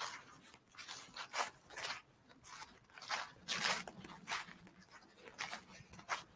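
Footsteps crunching through dry fallen leaves, a quick irregular series of crunches, about two or three a second.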